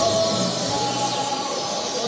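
Many caged songbirds singing at once: a dense, steady chorus of overlapping chirps, whistles and trills from the rows of competition birds.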